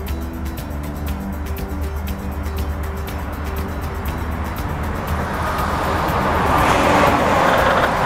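Norfolk Southern diesel locomotive approaching slowly, its engine and rolling noise growing louder from about five seconds in. Steady music-like tones run under it in the first half.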